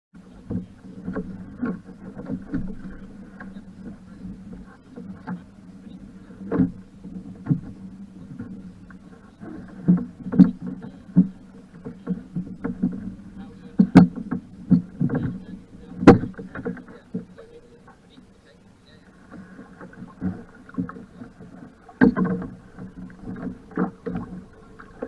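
Irregular knocks and bumps on the fibreglass hull of a Laser sailing dinghy, carried through the deck, as the boat is handled and climbed into in shallow water. Two sharp, loud knocks come a little past the middle.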